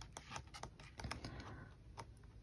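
Pages of a K-pop album photo book being flipped quickly by hand: a quick run of faint paper flicks and rustles that thins out near the end.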